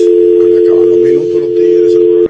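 Telephone dial tone, a steady two-tone hum, carried over the studio's phone line because the caller's call has dropped.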